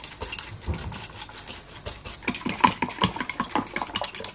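Metal spoon beating raw eggs in a glass measuring jug, clinking rapidly and steadily against the glass several times a second.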